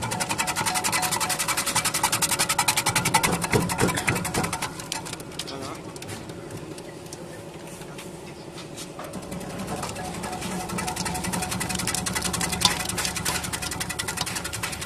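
Banana chip slicing machine running, its rotating blades cutting produce pushed down the feed tubes in a fast, even clatter. The clatter is louder for the first few seconds, eases off in the middle, and picks up again in the second half.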